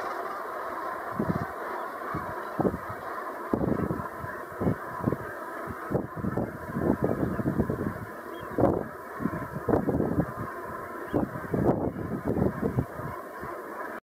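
A large flock of brent geese calling all at once, a continuous dense chatter of many birds. Frequent short, low rumbling thumps come over the top from about a second in.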